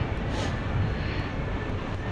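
Steady low rumbling background noise of a busy station concourse, with a short hiss about half a second in.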